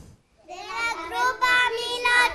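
Young children answering in a drawn-out, sing-song voice, starting about half a second in after a brief pause.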